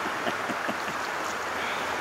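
Steady rush of fast-flowing river water, with a few small splashes and drips as a wader rises out of the river.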